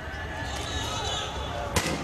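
Riot-scene street sound: steady noise with faint shouting voices, and a single sharp bang about a second and three-quarters in.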